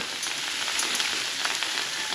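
Meat sizzling on a wire grate over an open wood fire, a steady hiss with small crackles.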